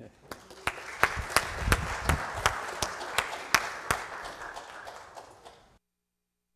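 Congregation applauding, with a dozen or so sharp individual claps standing out above the general clapping; it cuts off suddenly near the end.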